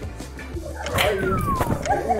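Background music under excited yelps and squeals from people in a pillow fight, with a falling squeal and a sharp hit about halfway through.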